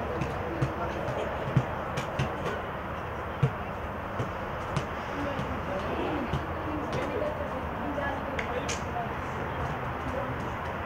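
Players' voices calling out across an outdoor football pitch over a steady background noise, with a few short sharp knocks, the loudest about one and a half and three and a half seconds in.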